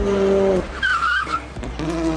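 Logo-sting jingle of sustained synth notes, with a short wavering high squeal-like effect about a second in, then new notes coming in near the end.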